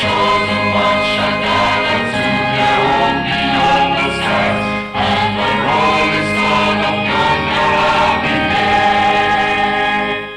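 Mixed church choir of men and women singing a gospel song in harmony. The singing breaks briefly about halfway.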